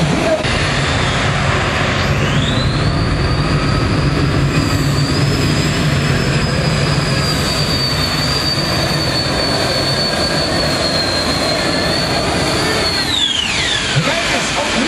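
Modified pulling tractor running at full power while hauling the weight-transfer sled. Its loud engine noise carries a high whine that rises about two seconds in, holds steady, then drops sharply near the end as the tractor comes off power.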